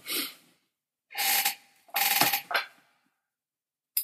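A man's breaths or sniffs close to the microphone: three short noisy bursts in the first three seconds, then silence and a brief click at the end.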